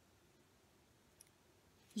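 Near silence: room tone, with one faint short click a little over a second in.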